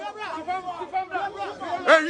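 Several people talking at once, their voices overlapping in a jumble of chatter.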